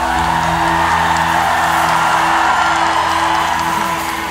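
A live band holding a long, sustained final chord at the end of a Balkan pop song, with a crowd cheering over it.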